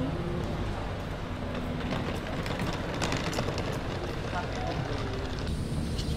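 Street ambience: a steady rumble of traffic, with a few faint clicks about two to three seconds in.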